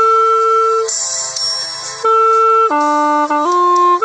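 Bamboo wind pipe playing a slow melody: a long held note, a softer breathy stretch of about a second, then a held note that steps down lower near the end with a quick ornament before settling.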